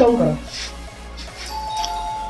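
Electronic doorbell chime: two steady tones, one a little higher than the other, that come in about one and a half seconds in and keep ringing.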